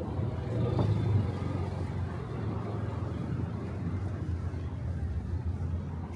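Street ambience with a steady low rumble, a little louder about a second in.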